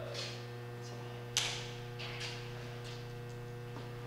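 Steady electrical mains hum, with one sharp click about a second and a half in and a few faint short rustles.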